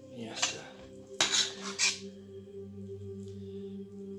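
Metal clinking against a stainless steel pot, several sharp clinks in the first two seconds as filling is scooped out. Soft background music with long held tones follows.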